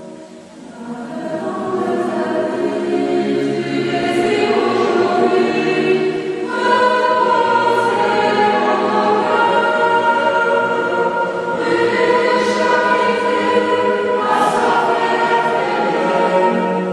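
Choir singing a slow sacred hymn in long held chords. The sound dips briefly right at the start, then swells back up within the first two seconds, with the chord changing a few times after that.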